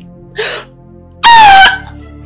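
A woman's sharp intake of breath, then a loud, high cry of pain a second later, slightly falling in pitch.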